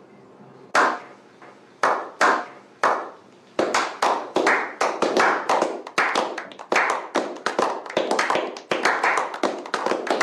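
A small group of men clapping in a slow clap. Single claps come about a second apart at first, then from about three and a half seconds in they build into quicker, overlapping applause.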